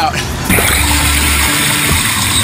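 Water pouring into a sinking car's cabin, heard from inside the car: a sudden, steady rush that starts about half a second in.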